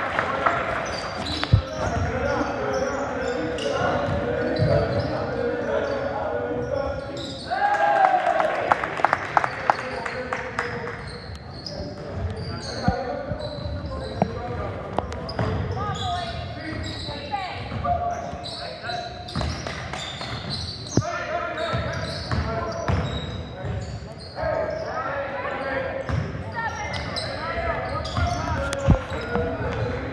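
Live high-school basketball game in a gymnasium: a basketball dribbled on the hardwood floor, with players' and spectators' voices calling out throughout, echoing in the hall.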